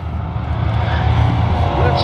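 Drag race cars' engines running at the strip's starting line, heard down the track as a steady, loud low rumble that builds slightly.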